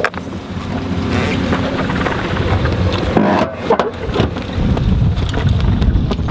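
Wind buffeting the microphone outdoors: a loud, ragged low rumble.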